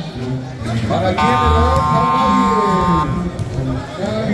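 A steady buzzing tone sounds for about two seconds, starting about a second in, over the chatter and calls of a crowd.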